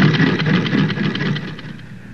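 Sewing machine running at speed: a rapid, steady clatter of needle and mechanism that fades out near the end.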